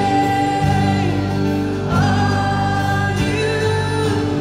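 Live church worship band playing, with women's voices singing long held lines over keyboard, guitars and bass; a new sung phrase begins about two seconds in.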